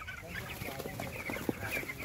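A large flock of young broiler chickens, about three weeks old, chirping: many short, high calls overlapping, with a few faint knocks among them.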